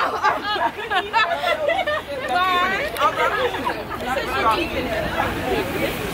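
Overlapping voices of several people talking and chattering at once, none standing out clearly.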